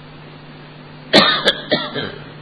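A person coughing three times in quick succession, starting about a second in, over a steady low hum and hiss.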